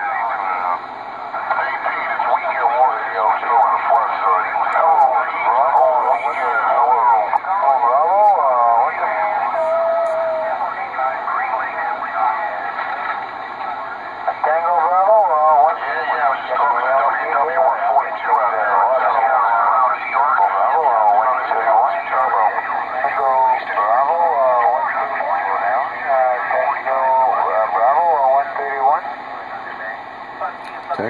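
Ranger RG-99 radio receiving on-air talk, the operators' voices coming steadily through its speaker with the narrow, band-limited sound of radio. The received audio holds steady with no chopping or motorboating, the sign that its AGC fault has been cured.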